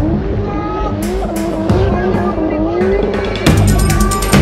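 Drift car's engine revving hard, its pitch rising and falling again and again as it slides, with tyres squealing, under background music whose beat comes back in loudly near the end.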